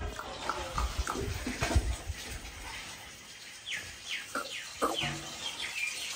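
Birds chirping: a run of short, quickly falling calls in the second half, with low rumbling handling noise earlier on.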